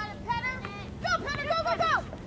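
Spectators shouting, high-pitched and excited, in several short calls whose pitch rises and falls; the words can't be made out, and one call drops in pitch near the end.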